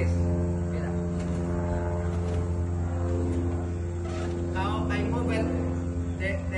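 Steady low machine hum with several even overtones, unchanging throughout, with voices talking around the fourth and fifth seconds.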